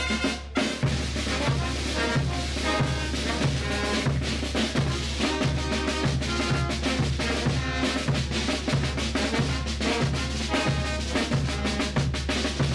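Bolivian brass band playing a morenada: bass drum and snare drums keeping a steady beat under trumpets and tubas, with a brief break about half a second in.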